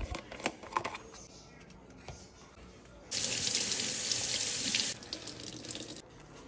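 Kitchen tap running for about two seconds, starting and stopping abruptly. Before it, a few light clicks from handling a plastic tub.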